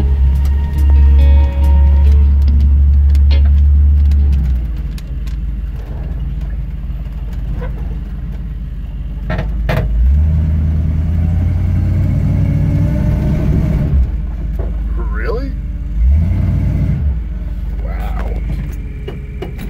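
The 454 big-block V8 of a 1982 Chevy K5 Blazer running at low speed on a dirt trail, heard from inside the cab. Its low rumble swells for the first few seconds, eases, and swells again about ten seconds in.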